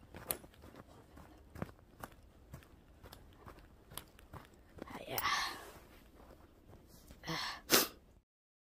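Faint, irregular crunching of slow footsteps in snow, with a breath about five seconds in and a sharper, louder breath near the end.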